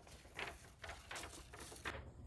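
A large paper poster rustling against carpet in short, rhythmic bursts, about three a second, as a cat drags it along in its mouth.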